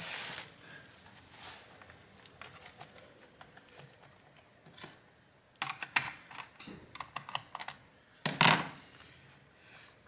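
Plastic snap clips of a laptop's bottom cover clicking as the cover is pried loose along its edge: scattered faint ticks, then a run of sharp clicks from about six seconds in and a louder snap at about eight and a half seconds.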